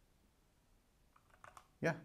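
A few quick keystrokes on a computer keyboard, faint, starting about a second in after a near-silent first second.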